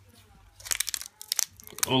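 Foil wrapper of a Magic: The Gathering Battle for Zendikar booster pack crinkling with a few sharp crackles as it is torn open by hand, starting about half a second in and lasting about a second.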